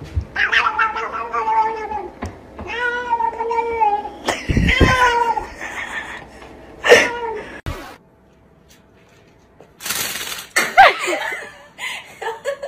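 Domestic cat yowling: three long, drawn-out meows in the first five and a half seconds, each held at a fairly steady pitch. A short sharp sound follows, then a brief silence and some scuffling noise near the end.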